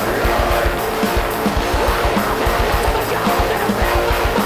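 Rock band playing live: electric guitar and bass over a rapid kick-drum beat from an electronic drum kit.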